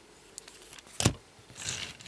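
Plastic transforming-robot toy car set down with a sharp click about a second in, then its small wheels rolling with a soft rustle across a cloth surface near the end.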